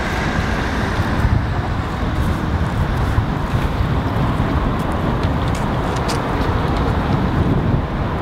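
Steady low outdoor rumble: wind buffeting the microphone over street and vehicle noise.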